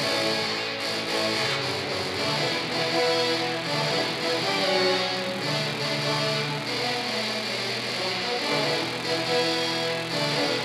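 Tuba and euphonium ensemble playing a metal-style arrangement: layered, held low brass notes changing every second or so at an even level.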